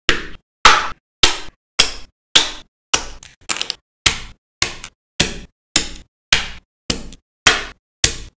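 Sharp knock sound effects in an even rhythm, about two a second, each dying away quickly into dead silence.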